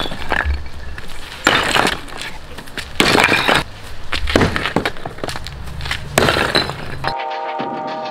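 A sledgehammer smashing a hollow concrete-block wall, with heavy strikes about every second and a half, each followed by chunks of broken block clattering down. Near the end the sound cuts suddenly to music.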